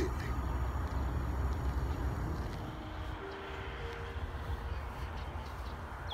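Steady low outdoor rumble with no words, with a few faint held tones partway through.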